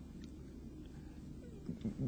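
Quiet room tone of a hall with a low steady hum and a few faint clicks, then near the end a short, faint gliding voice sound.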